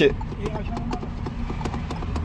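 Steady low rumble of a car cabin on the move, with a scatter of light clicks and knocks as the automatic gear selector is pushed against its lock. The lever will not go into reverse because the release button is not pressed.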